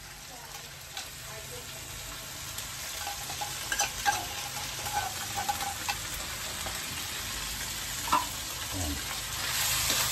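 Corned beef and sausage sizzling in a metal wok as a metal spoon stirs them, with a few sharp clicks of the spoon against the pan. The sizzle grows gradually louder toward the end.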